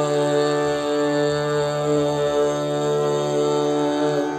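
Hindustani classical music: a male voice holding long, steady notes over a tanpura drone and harmonium, changing pitch only slightly once or twice.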